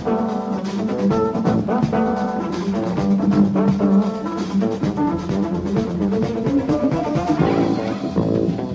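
Live jazz-rock band playing an instrumental passage: drum kit, electric guitar and bass guitar.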